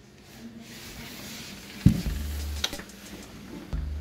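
Hotel room door being opened, with a single thud about two seconds in and soft handling hiss. Faint background music with a low bass line plays under it.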